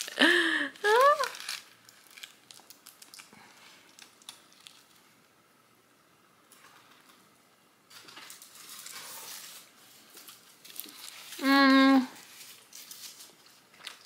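Aluminium foil wrapped around a burrito crinkling in small, scattered crackles as it is handled and bitten into. Near the end, a short, loud hummed "mmm" with a closed mouth.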